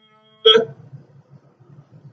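A man's single short, sharp catch of the voice in the throat, like a hiccup, about half a second in, in a pause of his chanted Quran recitation. The faint end of his last chanted note dies away just before it, and a faint low background rumble follows.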